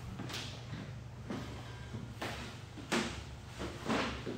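Quiet room noise: a steady low hum with a few faint soft knocks and scuffs, roughly one a second.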